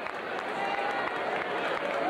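Basketball arena crowd: many overlapping voices chattering and calling out, with some scattered clapping.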